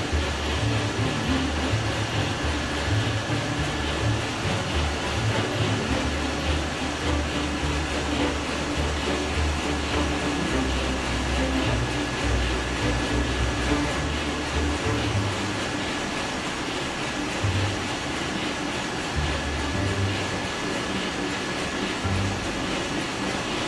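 Large ship's main diesel engine running, heard from inside its engine room: a loud, steady mechanical din over an uneven deep rumble, with a thin constant high whine.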